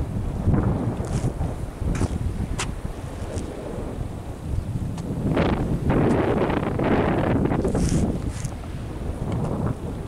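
Strong wind buffeting the microphone in gusts, rumbling low and swelling loudest and brightest from about five to eight seconds in.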